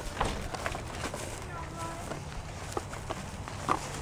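Low-level outdoor sound: a few light scuffs and rustles as a small dog moves about in dry grass and leaves, with faint voices in the background.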